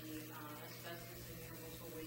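Faint, indistinct speech in a small meeting room over a steady low hum.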